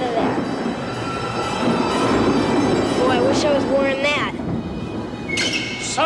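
Dark-ride ambience inside the Haunted Mansion: a steady rumbling, noisy wash with eerie effects, and a brief wavering voice-like tone about three seconds in.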